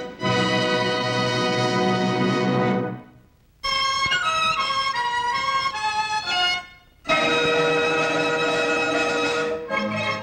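Orchestral film-opening music. A full held chord fades out about three seconds in. After a short gap comes a lighter melodic passage, then another brief gap, and the full ensemble comes back in loudly for the last three seconds.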